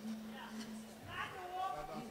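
A low steady note holds for about the first second, then faint voices are heard in the hall.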